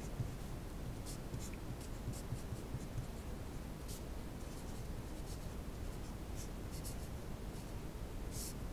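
Felt-tip marker writing on paper in a run of short, separate strokes over a steady low hum.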